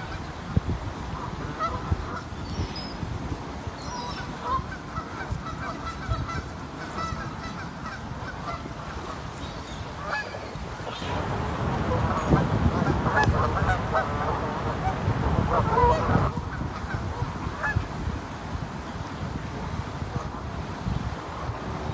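A flock of Canada geese honking, many birds calling over one another, the calls growing louder and denser for several seconds past the middle.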